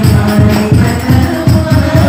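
Hadrah music: a group singing sholawat to a quick, steady beat of rebana frame drums with jingles.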